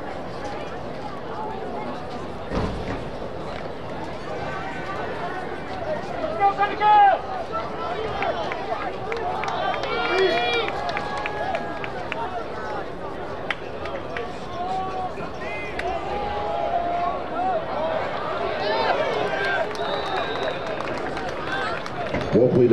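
Football crowd and sideline voices shouting and calling out over each other, with louder yells around the middle, a single thump early on and a short whistle blast near the end.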